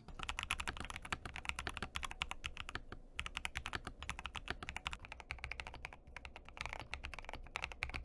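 Typing test on a Razer 75% mechanical keyboard: fast, steady keystroke clacking, first stock with its factory-lubed tactile switches, then in the later part modded with Morandi switches, Sumgsn keycaps and a case filled with kinetic sand and tape.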